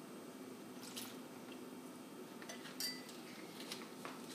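Faint light clicks of a metal tablespoon against a small glass bowl and a plastic zipper bag as water is spooned in: one about a second in and a few more near three seconds, over a low steady hum.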